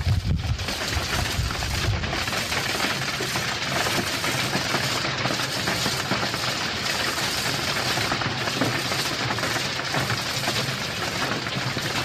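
Working coking plant: a continuous industrial din of dense crackling and rattling over a low steady hum.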